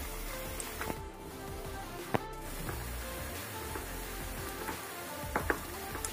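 Background music over the sizzle of besan-coated tomatoes deep-frying in hot oil, with a few sharp clicks.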